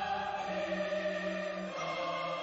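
Choral music: a choir singing long held chords, the chord shifting near the end.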